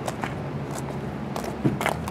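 A few light footsteps on pavement over a steady low hum.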